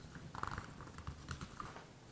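Sheets of paper being handled and turned over, giving a few short, faint rustles and crackles.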